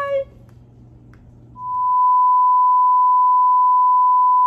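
A steady single-pitch beep tone, the standard test tone played with TV colour bars, fading up about a second and a half in and then holding unchanged at full loudness.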